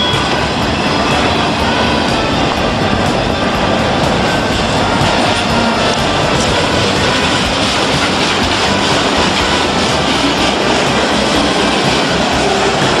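Freight train cars rolling past close by: a loud, steady rumble of steel wheels on rail.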